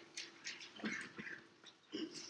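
Stylus writing on a tablet screen: a series of short, faint scratchy strokes with a few light taps as words are handwritten.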